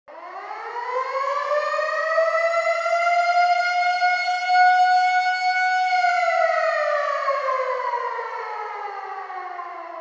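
Air-raid siren winding up over the first two seconds, holding one steady wail, then winding down slowly from about six seconds in.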